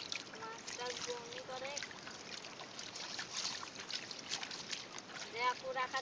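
Shallow pond water splashing and dripping in many small sharp splashes as hands grope through submerged weeds. A boy's voice is heard briefly about half a second in and again near the end.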